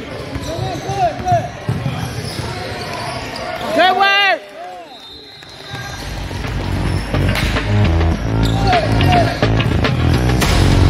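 Basketball sneakers squeaking on a hardwood gym floor, with a loud burst of squeaks about four seconds in, and a basketball bouncing. Music with a heavy beat plays underneath, dropping out briefly after the squeak burst and coming back louder.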